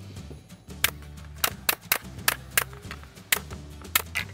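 Pneumatic staple gun driving staples into plywood: about seven sharp shots at irregular intervals, over background music.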